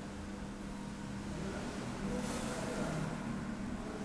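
Inside a 1990 Haushahn elevator car: a steady low machine hum and rumble that grows louder for a second or two in the middle, with a brief hiss at its peak.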